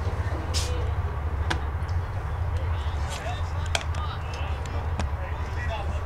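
Outdoor ballfield ambience: faint spectator voices over a steady low rumble, with a sharp pop about a second and a half in as the pitch smacks into the catcher's mitt, and another lighter click a couple of seconds later.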